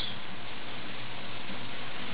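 Steady, even hiss of the recording's background noise, with no distinct event in it.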